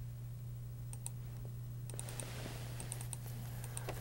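Scattered faint clicks from working a computer's mouse and keyboard, over a steady low electrical hum.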